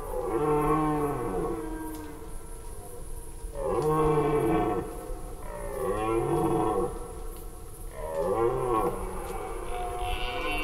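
Red deer stags roaring during the rut, giving their chasing roar (Sprengruf). There are four roars, each one to two seconds long, with a pitch that rises and then falls.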